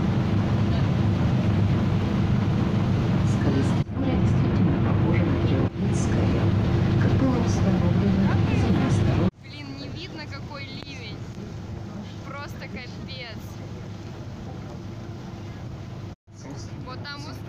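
Excursion motor ship's engine running with a steady low drone, heard from the deck. The sound breaks off briefly a few seconds in, then drops much quieter after a cut about nine seconds in, where voices come through faintly.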